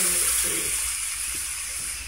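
Chicken and vegetable skewers sizzling on a hot ridged grill pan, a steady hiss that slowly fades.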